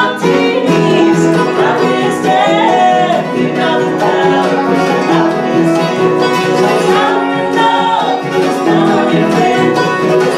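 Live bluegrass band playing a song, with banjo, mandolin, acoustic guitar and upright bass behind several voices singing together in harmony.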